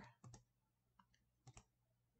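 A few faint, sharp clicks of a computer mouse, some in quick pairs, as Photoshop menus and tools are being selected.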